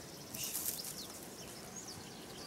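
Small birds chirping, several short high chirps over steady outdoor background noise, with a brief rustling hiss about half a second in.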